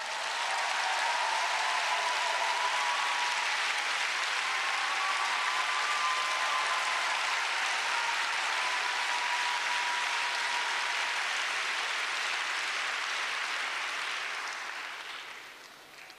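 Audience applauding, swelling up within the first second, holding steady, then dying away over the last couple of seconds.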